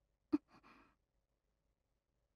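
A young woman's voice makes one brief, soft vocal sound about a third of a second in, followed by a faint breath; the rest is quiet.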